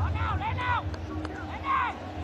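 Raised voices calling out a few times over the steady low hum of stadium ambience.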